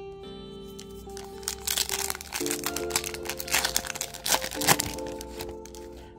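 Foil wrapper of a Panini Prizm football card pack crinkling and tearing as it is ripped open, mostly between about one and a half and five seconds in, over background music with held chords.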